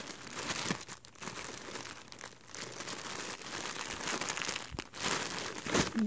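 Plastic packaging crinkling as it is handled: a shirt's clear sealed poly bag and a plastic mailer bag being moved about in the hands. It is a steady crinkle with a few sharper crackles.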